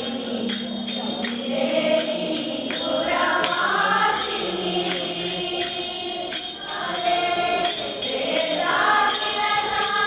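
A group of women singing a devotional bhajan in chorus into microphones, with a steady percussive beat of about three to four strikes a second keeping time.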